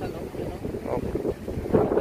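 Wind buffeting the microphone: an uneven low noise with faint voices underneath.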